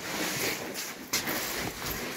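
Quiet rustling and handling noise with a few soft knocks as a phone is moved close past a nylon dome tent.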